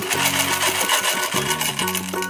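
Background music with sustained notes, and over it a dense rattle of small candy-coated chocolates pouring out of a plastic bottle onto a pile of candy.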